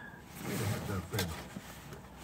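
A man's voice, low and brief, making sounds with no clear words.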